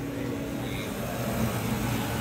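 Steady low machine hum, with a second, higher tone that fades out about half a second in.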